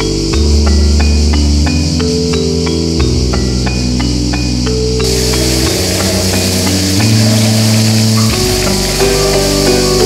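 Background music of slow sustained bass and synth notes with a light ticking beat, over a steady high buzz of cicadas singing in the trees; the buzz grows brighter about halfway through.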